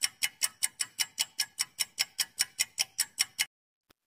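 Countdown-timer ticking sound effect, quick, even ticks at about five a second that stop suddenly near the end as the answer time runs out.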